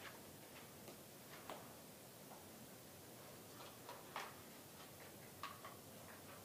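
Near silence: room tone with a few faint, scattered clicks from a large paper crossword chart being handled.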